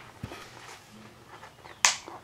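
Sharp plastic clicks as a fingernail picks at the security tape sealing the top of a Blu-ray case: a small click just after the start and a much louder snap near the end.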